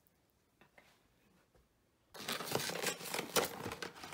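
Quiet for about two seconds, then suddenly loud crinkling and rustling of a cardboard box and paper inserts being handled and pulled open by hand.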